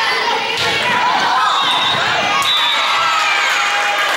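Volleyball being struck during a rally on an indoor court, a few sharp hits ringing through a large echoing gym, over players calling and spectators talking and shouting.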